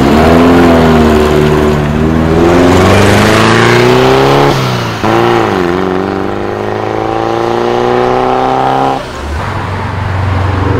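Air-cooled flat-four engine of an early-1970s Volkswagen Beetle pulling away and accelerating. Its revs hold, dip briefly about halfway, then climb steadily before the sound drops away sharply about nine seconds in.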